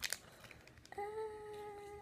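A girl's drawn-out hesitating "uhh", held on one steady pitch for about a second, starting halfway through. It follows a brief crinkle at the start from the small plastic packet of candy mix being handled.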